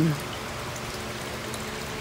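Steady trickle of water running from hydroponic gutter channels into a buried reservoir tote, the nutrient solution recirculating.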